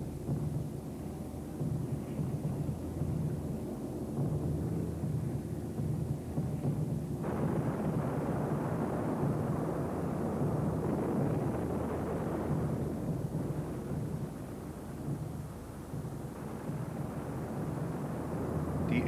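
Bomb explosions heard as a long rumble over a steady low drone. About seven seconds in, the rumble abruptly grows louder and fuller, then eases off again around thirteen seconds.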